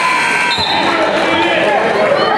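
A buzzer's steady tone cuts off about half a second in. Children's voices and a single thump follow.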